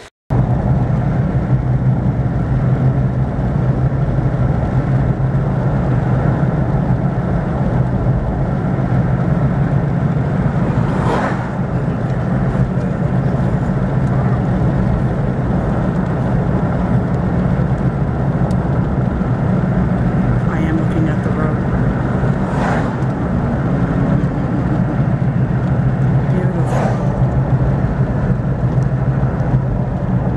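Steady car road and engine noise heard from inside the cabin of a moving car, with a few short knocks, one about eleven seconds in and two more near the end.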